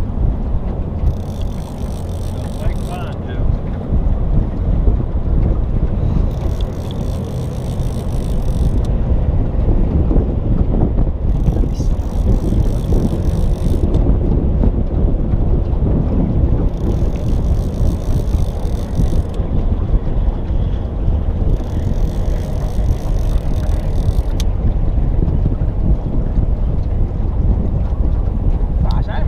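Wind rumbling steadily on the microphone over the water. On top of it an Okuma Classic XT levelwind baitcaster reel is cranked in spells of about two seconds, roughly every five seconds, as it winds in a small catfish on the line.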